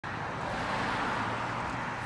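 A car passing on the street, its tyre and engine noise steady throughout.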